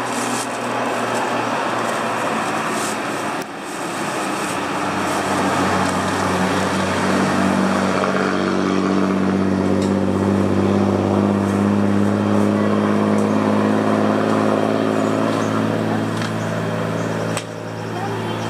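An engine running with a steady low hum, growing louder for several seconds and then easing off, over a general background of outdoor noise.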